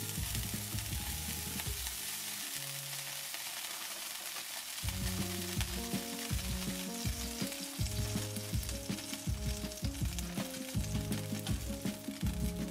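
A hot nonstick skillet sizzling and spitting as small droplets spatter on its surface, with background music playing underneath.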